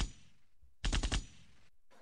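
Gunfire sound effect: a short burst right at the start, then another quick burst of about four rapid machine-gun shots about a second in.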